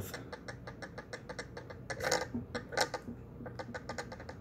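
Metal pinion and spur gear teeth clicking lightly as the spur is rocked back and forth in a rapid, uneven series of small clicks. The slight click is the gear backlash being checked by ear, a sign of a proper, not-too-tight mesh.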